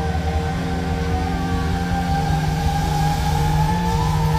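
Live heavy metal band holding a sustained, droning chord on distorted electric guitars and bass, with a high steady tone running over it and a rapid rumbling low end beneath.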